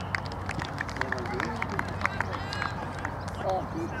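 Footsteps on an artificial-turf pitch, a quick irregular patter of light ticks, with distant young voices calling near the end.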